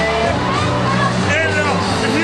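Crowd voices and shouts over loud amplified music, with a steady line of low notes under the babble.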